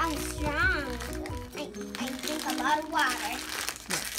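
Plastic and cardboard packaging of a toy wand box crinkling as it is torn open, over background music with steady held notes.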